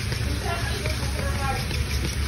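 Pork and vegetables frying in a pan with soy sauce just added: a steady soft sizzle over a low rumble.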